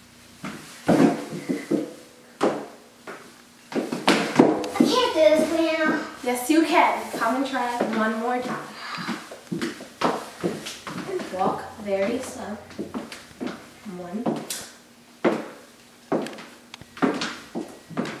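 Talk between a girl and an older girl, a child's voice among them, with a few sharp taps of shoes on a hardwood floor between the phrases.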